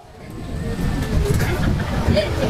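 A large audience laughing together, the sound swelling over the first second and carrying on.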